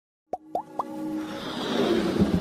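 Animated intro sound effects: three quick rising bloops about a quarter second apart, each a little higher in pitch, then a swelling whoosh that builds into the intro music.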